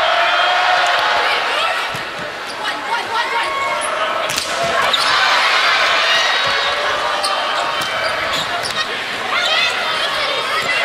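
Sneakers squeaking on a hardwood volleyball court during a rally, over steady crowd chatter, with a few sharp smacks of the ball being hit about four to five seconds in.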